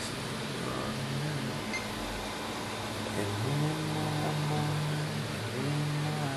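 Steady whooshing rush of a Cooler Master HAF X gaming PC's many case fans, including its 200 mm front and top fans. A low pitched hum comes and goes over it: briefly about half a second in, held for about two seconds in the middle, and again near the end.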